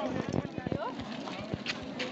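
Faint background chatter of voices, with a quick run of soft knocks in the first second and another single knock about halfway through.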